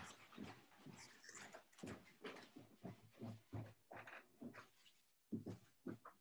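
A dog whimpering and whining in a string of short, faint sounds, several a second, with a brief pause near the end.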